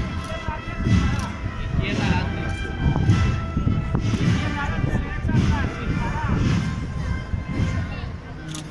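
Procession band music, with steady held notes and heavy drum beats roughly once a second, over crowd voices.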